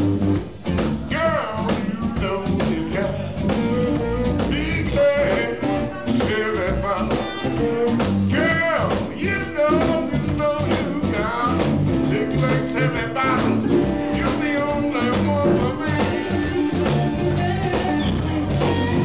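Live electric blues band playing: an electric guitar takes the lead with notes that bend in pitch, over bass guitar, drums and keyboard.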